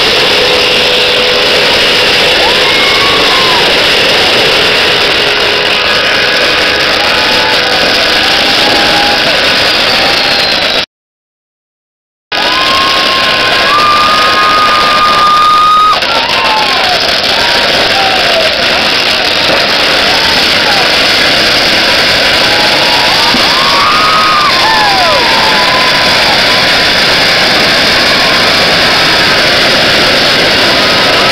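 Dense, unbroken crackle of firecrackers going off, loud throughout, with voices shouting through it. The sound cuts out completely for about a second and a half near the middle.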